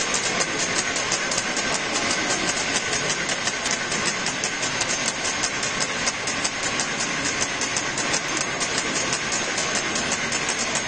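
Steady hubbub of a large crowd echoing in a big church, with a fast, even clicking running through it.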